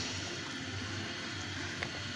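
Masala fish curry simmering faintly in a karahi while the pan is gently swirled by its handle, over a steady low hum. A small click near the end.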